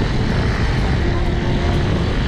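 Strong wind buffeting the microphone: a loud, steady rumbling rush with no let-up.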